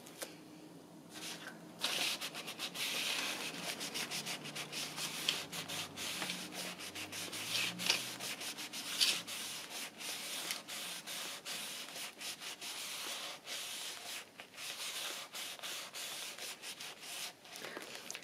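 A crumpled paper tissue rubbed briskly against paper in quick, repeated strokes, starting about two seconds in.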